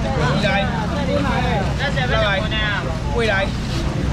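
Mostly speech: loud voices talking, sometimes overlapping, over a steady low rumble.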